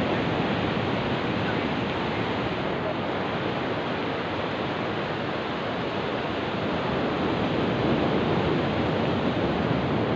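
Steady rush of ocean surf mixed with wind on the microphone, an even, unbroken wash of noise.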